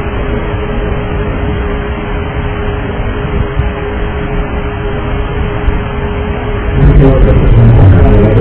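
Steady cabin background noise of a DC-9 airliner recorded on the cockpit voice recorder's cabin channel. It sounds narrow and muffled, with a constant hum near 400 Hz running underneath. Near the end it grows louder and fuller.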